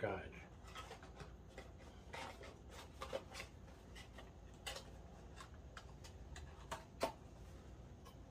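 Small cardboard boxes and their contents handled: light scraping and rustling with scattered clicks and taps, the sharpest tap about seven seconds in.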